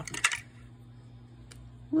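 Light clicks of small plastic pieces being handled: a quick cluster at the start and a single click about one and a half seconds in. A faint steady hum runs underneath.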